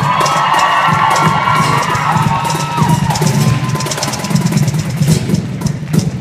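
Live band playing with a drum kit, steady bass drum and cymbals under guitar. High sustained voices ring out over it in the first half, then fade out about three seconds in.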